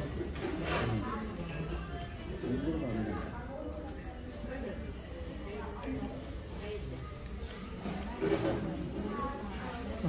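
Indistinct background chatter of diners talking in a restaurant, with a few faint clicks.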